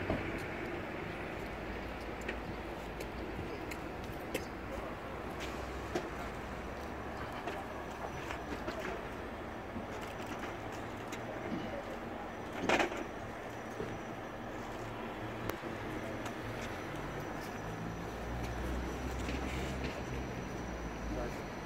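Quiet open-air town-square ambience: a low background hum of distant traffic with scattered small clicks, and one brief louder sound about 13 seconds in. A low rumble swells near the end.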